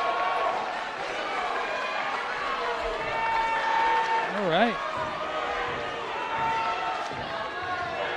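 Crowd and team benches shouting and calling out in a gym as a wrestler holds his opponent on his back for a pin. Many voices overlap, and one voice yells out with a rise and fall about halfway through.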